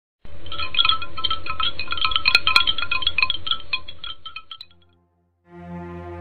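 A shimmering cluster of bright chime tones, like wind chimes, rings and fades out over about four and a half seconds. After a brief gap, a steady low musical drone begins near the end.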